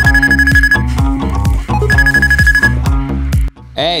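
Upbeat background music with a steady beat, over which a phone rings twice, each ring a steady high tone lasting under a second. The music stops shortly before the end.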